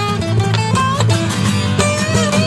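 Acoustic guitar solo: a run of picked notes over a steady low backing.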